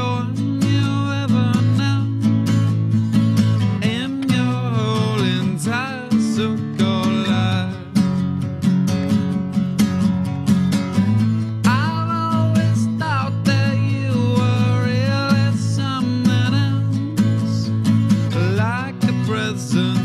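Solo acoustic steel-string guitar played in a steady strummed rhythm, with a male voice singing in stretches over it.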